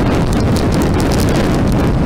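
Steady wind rushing over the microphone of a camera riding at road speed, with a low road rumble underneath.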